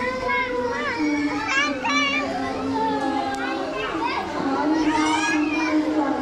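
A female singer singing a Bengali gazal through a microphone, holding long, steady notes, while many children's voices chatter and call out over it, loudest about a second and a half and five seconds in.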